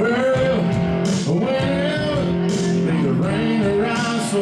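Live country-rock band playing: electric guitars, bass guitar and drum kit with cymbals, with a held, bending melody line over them.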